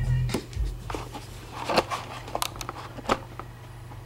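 A hip-hop track's beat, heavy in the bass, stops shortly after the start. After it come a few sharp knocks and rustles of the camera or laptop being handled, over a low steady hum.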